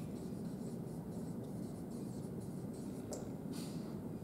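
Dry-erase marker being written with on a whiteboard: faint, short squeaking and scratching strokes over low, steady room noise.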